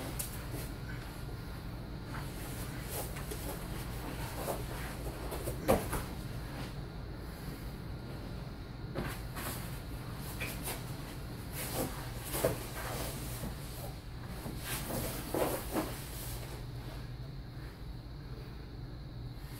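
Grappling on foam mats: bodies and gi cloth shifting, rustling and thudding irregularly, with the sharpest thump about six seconds in and a few more near the end, over a steady low hum.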